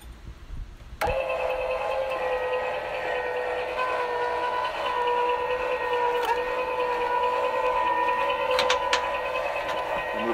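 A travel trailer's electric tongue jack motor starts about a second in and runs with a steady whine, driving the jack down onto the wood blocks to lift the trailer tongue off the hitch ball. There are two light clicks near the end.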